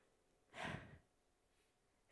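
A man's single short sighing exhale, about half a second in, with near silence around it.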